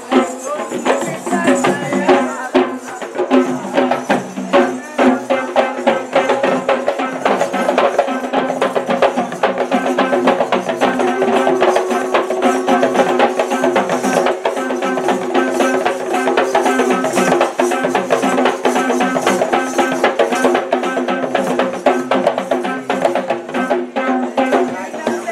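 Sri Lankan Kandyan drums (geta bera) beaten by hand in a fast, dense rhythm, over a steady held drone.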